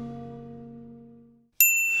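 The last held chord of plucked-string music dies away into a moment of silence, then a single high bell-like ding strikes about one and a half seconds in and keeps ringing.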